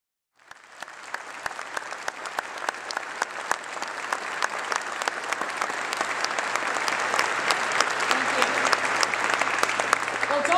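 An audience applauding. It starts from silence just after the beginning and builds steadily louder throughout.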